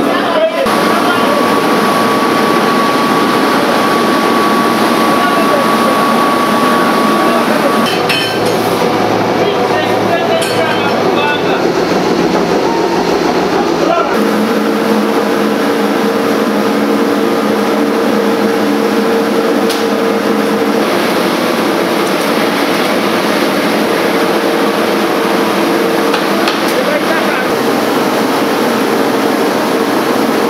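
Recycling plant machinery running, a continuous loud noise with a steady hum from about halfway through, with people's voices over it.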